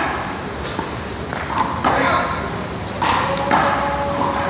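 One-wall handball rally: a small rubber ball is struck by hand and smacks off the wall, giving several sharp smacks spaced about half a second to a second apart.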